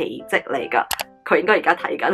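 A woman talking, with a camera-shutter click sound effect about a second in, followed by a few held musical notes under her voice.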